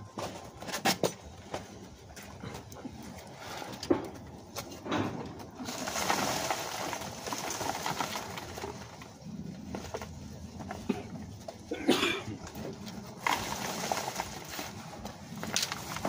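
Dry oak leaves rustling as a large plastic nursery pot full of them is handled and tipped into cardboard boxes, with scattered knocks and clicks of plastic and cardboard. The rustling is strongest from about six to nine seconds in.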